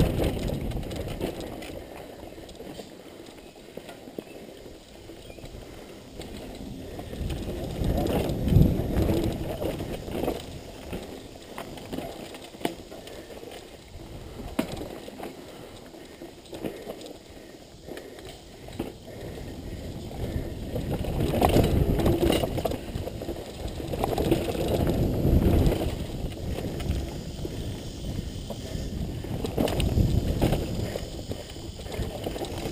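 Mountain bike riding down a dirt trail, heard from a camera carried on the bike or rider: wind rumbling on the microphone in swells, with tyres on dirt and scattered sharp clunks and rattles of the bike over bumps and roots.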